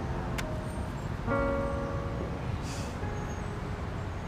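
Soft instrumental background music with held chords, the second chord coming in about a second in, over a steady low street rumble like distant traffic.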